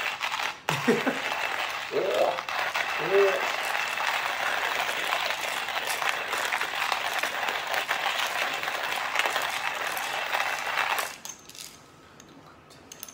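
Portable stainless-steel hand-crank coffee mill grinding beans, a steady rasping rattle as the crank turns. It breaks off briefly about half a second in, then runs on and stops about a second before the end.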